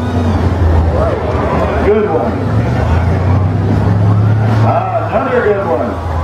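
Demolition derby car engines running with a steady low drone, their pitch rising and falling as the cars rev and maneuver. Voices are heard over them.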